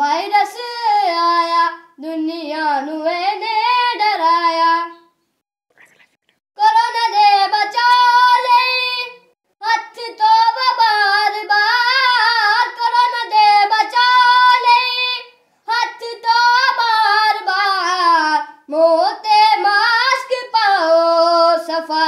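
A boy singing solo with no accompaniment, in a high voice, in long held phrases. There is a pause of about a second and a half around five seconds in, and short breaths between the later phrases.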